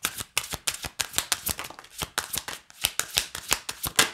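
A deck of oracle cards being shuffled by hand, overhand style: a quick, uneven run of card flicks and slaps, several a second, that stops at the end.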